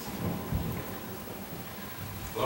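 Low rumbling and a soft thump about half a second in: handling noise from a handheld microphone held by someone who is not speaking.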